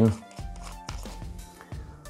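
Quiet background music with steady held notes, and a faint click about a second in as the screw-on push cap is turned off the grip of an Umarex HDR 50 CO2 revolver.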